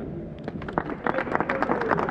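A small crowd clapping, starting about half a second in.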